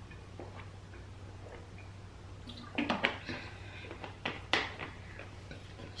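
Drinking from a water bottle: faint swallowing at first, then a few short, sharp sounds about three seconds in and again near four and a half seconds as the drinking ends.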